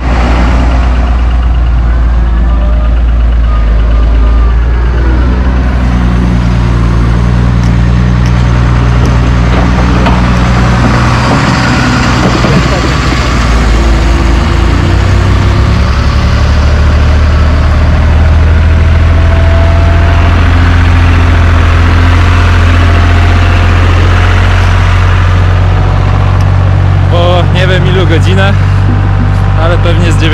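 Diesel engines of heavy construction machinery running, a wheeled excavator and a site dumper, with the engine pitch shifting a few times.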